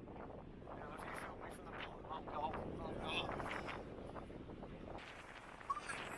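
Wind noise on the microphone, steady and fairly low, with faint voices talking in the distance in the middle seconds.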